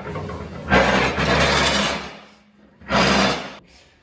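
A steel 42-inch lawn tractor mower deck dragged out across a concrete floor, scraping in two pulls: a longer one starting under a second in and a shorter one about three seconds in.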